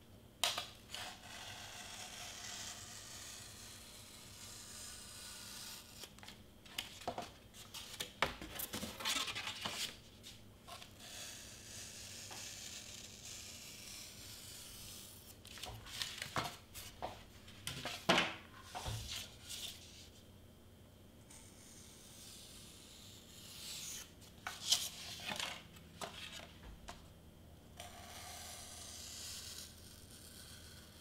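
Craft knife slicing through foam board on a cutting mat: long scratchy scraping strokes, broken by sharp knocks and rustles as the board is lifted, turned and set down, in clusters around a third of the way in, past the middle and again later.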